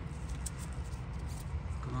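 A gloved finger rubbing on a motorcycle fork leg, with a few faint clicks, over a steady low background rumble.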